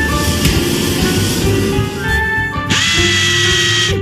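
Cartoon welding-torch sound effect, a rough, steady noisy hiss, layered over background music with held notes.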